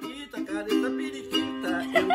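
Ukulele strummed in repeated chords.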